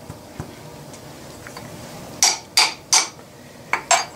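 Milling-machine vise being tightened down on a small brass rod: a faint click about half a second in, then five short, sharp metallic clinks in the last two seconds.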